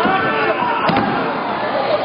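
A wrestler slammed down onto the ring canvas, making a heavy thud on the ring right at the start, over the crowd's constant shouting.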